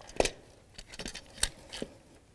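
A few light, sharp clicks and knocks of engine parts being handled and worked by hand, about three of them spread over two seconds.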